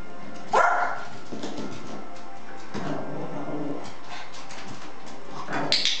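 Small Yorkshire terrier giving one sharp bark about half a second in, then a shorter, softer pitched dog sound near the middle, excited during a ball game.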